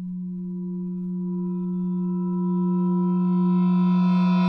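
A sustained low electronic drone tone swelling steadily louder, its higher overtones building in as it grows.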